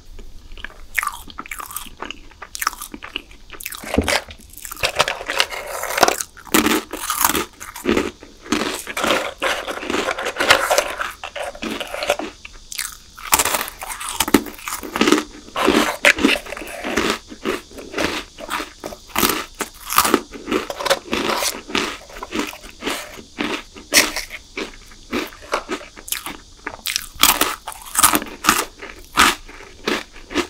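Close-miked crunching and chewing of chocolate snacks, among them a crunchy biscuit stick: many irregular sharp crunches. The first few seconds are quieter, and dense crunching starts about four seconds in.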